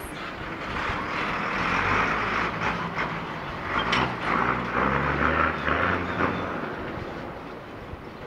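Diesel engine of a chicken bus, a converted school bus, running past close by and pulling away down the street. It is loudest in the first half and dies away toward the end.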